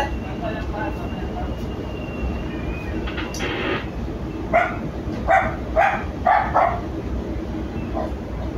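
Strong wind buffeting the microphone with a steady low rumble on a ship in a rough sea. A thin high whistle comes in the first few seconds, and in the second half a run of short, sharp calls comes about half a second apart.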